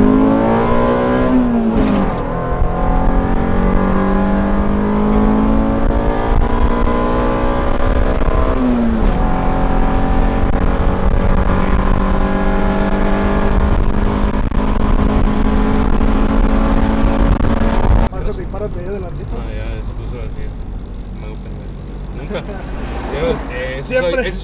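Honda B18C GSR 1.8-litre DOHC VTEC four-cylinder in a Civic EG under full throttle, heard from inside the cabin. The engine note climbs and drops sharply at gear changes about two and nine seconds in, then runs high and steady on a test pull of its new ECU tune. About eighteen seconds in it falls suddenly to a quieter, lower engine hum.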